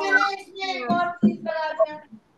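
Children's voices over a video call, reading aloud in a sing-song chant: several drawn-out syllables that sound out the letters of a word.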